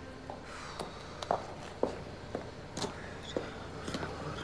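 Footsteps on a paved street, sharp steps about two a second.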